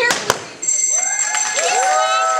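Two quick thuds as a bat strikes a carnival high-striker prop, followed just over half a second in by a steady high ringing tone, with voices whooping in long rising-and-falling cries.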